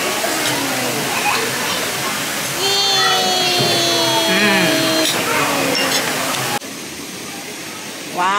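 Busy dining-room hubbub of background chatter and tableware, with a long held voice-like note in the middle. About six and a half seconds in, it cuts to a quieter, steady hiss of water falling from small rock waterfalls into a pond.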